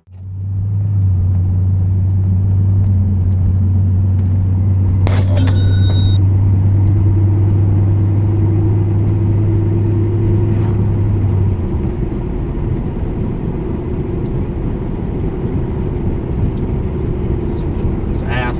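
Cabin noise of a Pontiac Grand Prix at steady cruise: engine and tyre noise with a deep steady drone that drops away about eleven seconds in. A brief high-pitched tone sounds about five seconds in.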